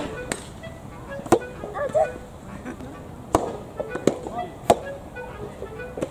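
Soft tennis rally: sharp pops of rackets striking the soft rubber ball and the ball bouncing on the court, about half a dozen separate hits spread irregularly.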